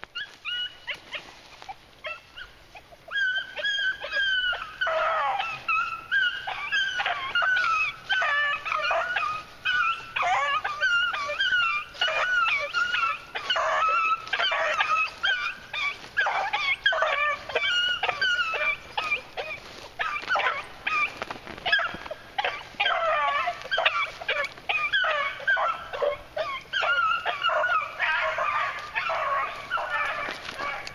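Beagle hounds baying on a rabbit chase, long overlapping bawls that start about three seconds in and run on without a break.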